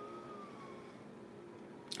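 Leaf blower running outside, heard faintly: a steady whooshing hiss with a thin whine that rises slightly in pitch and then eases back down.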